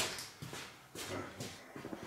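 A sharp click, then faint scattered taps and shuffling: footsteps and handling noise as the camera is moved on a workshop floor.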